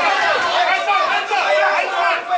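Boxing spectators and cornermen shouting and talking over one another, many voices at once.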